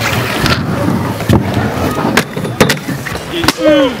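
Inline skate wheels rolling over concrete, with several sharp clacks and knocks of hard skate frames striking the ledge and ground during a grind attempt. A short shout comes near the end.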